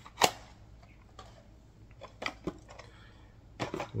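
Plastic cassette cases being handled and opened: one sharp click about a quarter of a second in, then a few lighter clicks and knocks, with a small cluster near the end.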